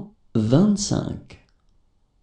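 Speech only: a voice reading a number aloud in French, 'cinq cent vingt-cinq', ending about a second and a half in.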